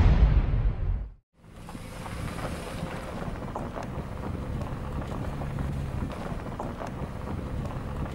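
Theme music ends about a second in. After a moment's silence comes the steady rumble of a vehicle driving, with wind noise on the microphone.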